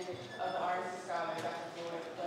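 Indistinct talking in a room, with a few light clicks or knocks.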